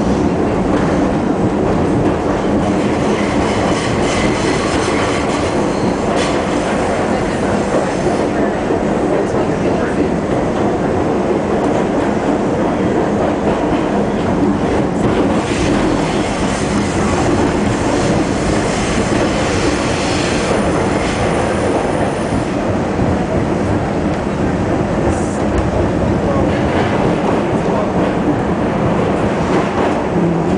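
An R-68 subway car running at speed, heard from inside the front car: a loud, steady rumble of motors and wheels on the rails, with a few brief clanks along the way.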